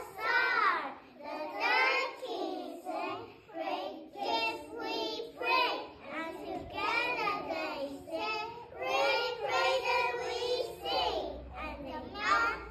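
A group of young children singing a song together, phrase after phrase.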